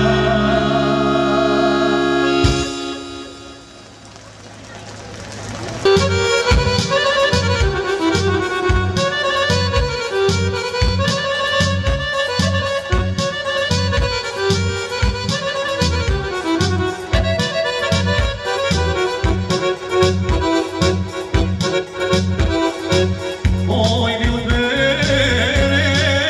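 Live band music without singing: a held chord breaks off about two and a half seconds in, and after a short quiet dip a steady beat starts under an accordion melody.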